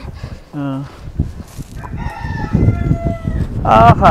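A rooster crowing once: one long, level call that starts about two seconds in and lasts just over a second.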